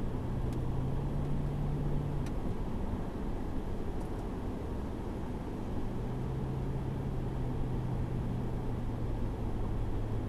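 A car driving at highway speed, heard from inside the cabin: steady tyre and road noise with a low engine drone. The drone fades about two seconds in and returns about six seconds in.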